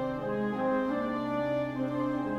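Orchestral playback of a slow legato melody doubled in octaves by winds, held over a sustained low string chord, with notes changing smoothly.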